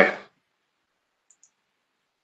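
Near silence on a video-call audio line after the tail of a spoken "aye", broken only by two faint ticks about a second and a half in.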